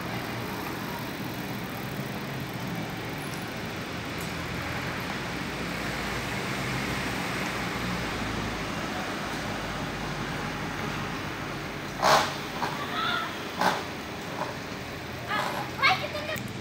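Steady street traffic noise with a low hum, swelling a little around the middle. Near the end, a few short, loud sounds break in.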